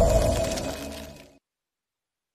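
Studio logo sound effect: the tail of a glassy shattering hit with a held ringing tone, fading away and stopping abruptly about one and a half seconds in.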